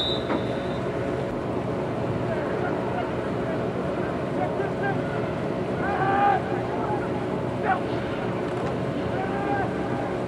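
Steady outdoor hum and noise at a football field in snow, with faint, distant shouts from players about six seconds in and again near the end. A whistle blast ends just under a second in.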